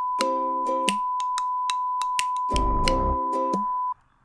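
A steady, pure bleep tone standing in for swearing, held about four seconds and cutting off just before the end. Under it run a string of sharp clicks and two held lower notes, one early and one in the second half.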